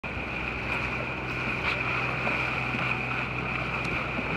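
A sailboat under way, heard from the bow: a steady low hum and a constant high-pitched whine over an even hiss.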